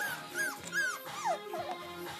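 Six-week-old Papillon puppies giving a quick run of four or five short, high yips with falling ends, over background music.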